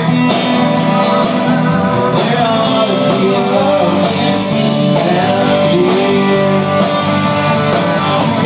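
Live country-rock band playing at full volume: drums keep a steady beat under electric and acoustic guitars and keyboard, with a wavering melody line carried over them.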